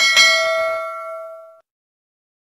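Notification-bell ding sound effect from a subscribe animation: a bell chime struck twice in quick succession, ringing with a few clear tones that fade out after about a second and a half.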